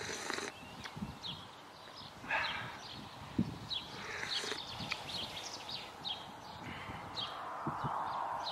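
A small bird calling outside, short falling chirps about once a second, over the rustle of a fabric jacket being handled and a few soft thumps.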